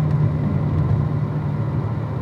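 Corvette Z06's V8 engine droning steadily at about 2,000 rpm in fifth gear while cruising and slowly losing speed, heard inside the cabin over a haze of tyre and road noise.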